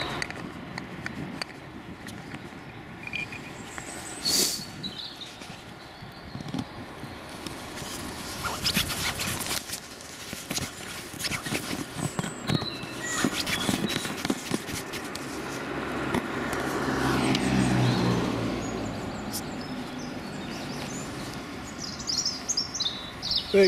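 Outdoor roadside ambience: knocks and rustles from the handheld camera, and a vehicle passing on the road, which swells and fades in the second half. Faint bird chirps come from the trees.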